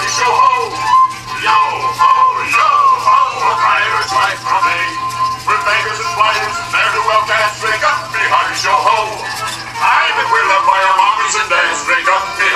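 A pirate song sung by several voices with instrumental backing, played for animatronic talking skulls, continuous and loud, over a steady low hum.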